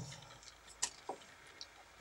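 Quiet room tone broken by a few faint clicks or taps, the sharpest just under a second in, a smaller one just after, and a very faint tick later.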